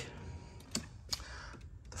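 Quiet room tone with two faint, sharp clicks, one a little under a second in and another close after.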